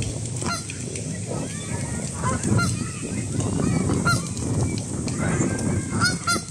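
A flock of Canada geese honking, with many short calls overlapping one another.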